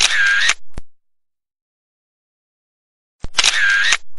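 Camera-shutter sound effect, heard twice about three and a half seconds apart. Each is a click, a loud half-second burst and a second click, with silence in between.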